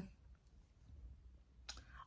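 Near silence: room tone, with one faint click shortly before the end.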